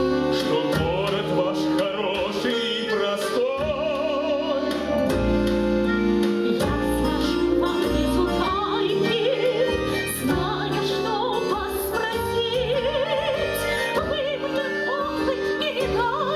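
A woman singing in an operatic style with wide vibrato over instrumental accompaniment.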